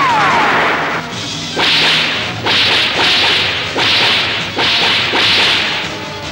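Film gunfire sound effects: a falling ricochet-style whine at the start, then a rapid run of five or six sharp rifle shots, each with a short noisy tail, under a second apart.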